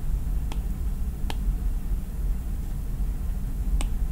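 Steady low hum of background noise with three faint, sharp clicks spread through it: fingertip taps on the iPad's glass screen.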